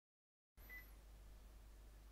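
Near silence: the recording is dead silent for about half a second, then faint room tone with a low steady hum.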